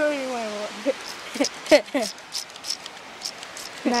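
A child's voice making a long falling whine, then a few short laugh-like sounds, with scattered light clicks and rustles.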